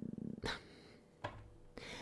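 Tarot cards being handled on a table: two light clicks of cards set down, then a brief rustle of cards sliding. A short, low, pulsing hum fades out at the start.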